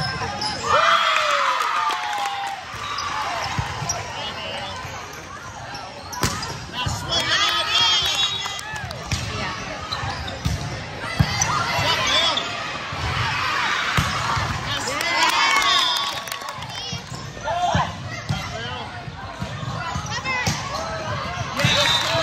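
Indoor volleyball rally sounds in a large, echoing gym: sneakers squeaking on the court, the ball being struck now and then with sharp knocks, and players and spectators calling out.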